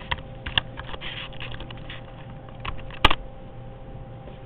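Light clicks and taps in quick runs, like keys being pressed, with one sharp, louder click about three seconds in, over a faint steady hum.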